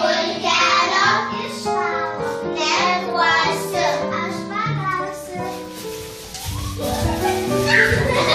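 A group of children singing a song, with steady held notes; the singing thins out briefly a little after the middle, then picks up again.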